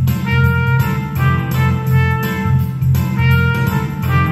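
Trumpet playing a melody of held notes over recorded accompaniment with a bass line and a steady beat.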